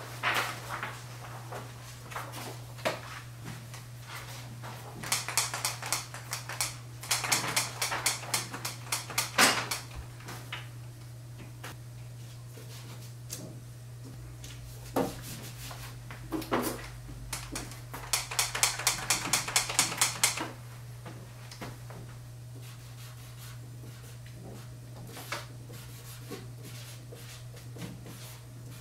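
Handling noise from taping a paper sheet to a board: two runs of rapid crackling clicks lasting several seconds each, the first beginning about five seconds in and the second near two-thirds of the way through, with scattered knocks and taps. A steady low hum runs underneath.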